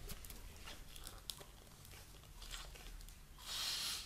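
Plastic screw cap of a PET bottle of kombucha being twisted open: faint small clicks, then a short hiss near the end.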